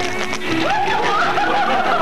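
String music on an old film soundtrack gives way about half a second in to a group of people laughing, short repeated bursts that run on.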